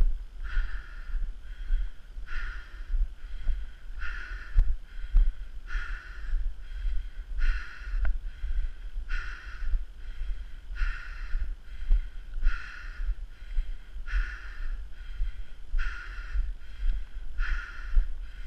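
A person's heavy, rhythmic breathing close to the microphone while walking uphill, a breath a little under once a second, over a low wind rumble on the microphone.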